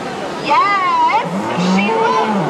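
Walking dinosaur puppet calling: a high, wavering squeal about half a second in, then a lower drawn-out moan, over crowd chatter.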